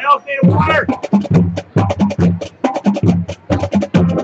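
Marching band's percussion section playing a fast, driving rhythm of sharp drum hits over deep, evenly recurring bass-drum strokes. Held wind chords stop right at the start, and a short sliding, voice-like sound is heard in the first second.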